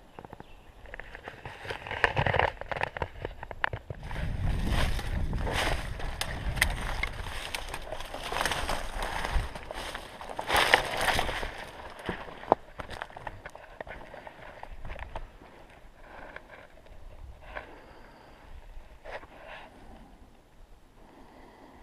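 A person moving through dry leaf litter and brush on a rocky slope: crunching and rustling with sharp twig snaps, loudest in the middle, with a low rumble beneath.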